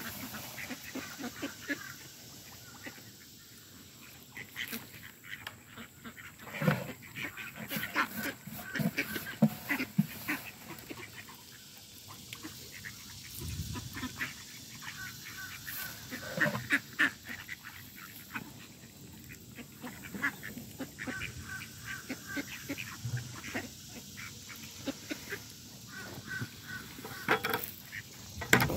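A feeding flock of mallards and American black ducks calling and quacking on and off, with geese honking now and then and many short clicks among the calls.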